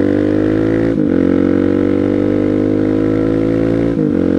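Suzuki DR-Z400SM single-cylinder engine pulling under acceleration, its pitch climbing steadily. It is briefly interrupted about a second in and again at the end, with the pitch dropping each time, as the rider shifts up a gear.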